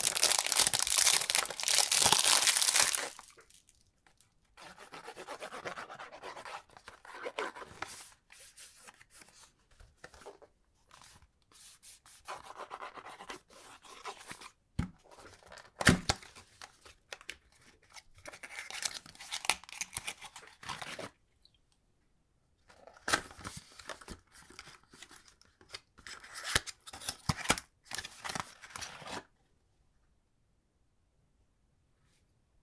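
Plastic film wrapper being torn and peeled off a cardboard perfume box for about the first three seconds. After that comes intermittent rustling and scraping of cardboard as the box is opened and its inner insert unfolded, with one sharp tap about sixteen seconds in.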